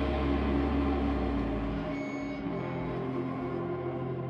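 Live doom metal band holding long, ringing electric guitar and bass chords with no clear drumbeat. A deep bass note drops out about a second and a half in, leaving the sustained guitar tones.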